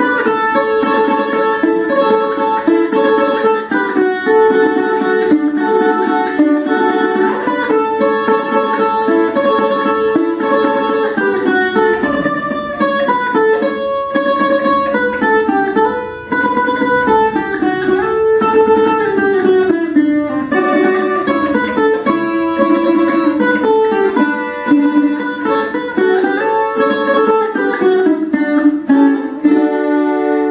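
Colombian requinto, a small steel-strung instrument with its strings in triple courses, played with a plectrum: a quick, continuous carranga paso doble melody in fast picked notes, with falling runs in the middle. The picking stops near the end and the strings are left ringing.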